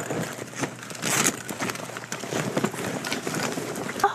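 Rustling and crackling of cloth and a bag being rummaged through by hand: an irregular run of short scraping, crinkling strokes.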